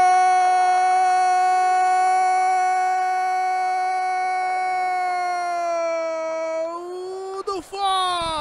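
A sports commentator's long drawn-out goal shout, one note held for about seven seconds, its pitch sagging slightly before it breaks off near the end.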